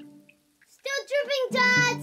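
A plucked-string note from the background score dies away, then after a brief gap a child's high voice comes in with a short sing-song phrase of bending notes, ending on a held note.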